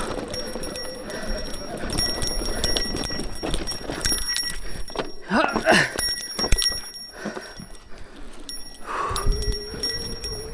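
Mountain bike rolling over a rough dirt trail, the brass bell hanging from its handlebar jingling in rings again and again as the bike knocks and rattles over bumps. A short vocal sound from the rider comes a little past halfway.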